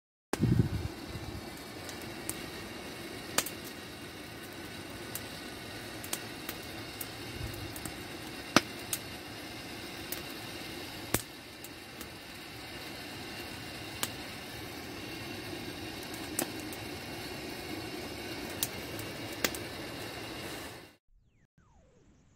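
Wood campfire burning: a steady hiss with irregular sharp pops and cracks from the burning wood. It cuts off abruptly near the end.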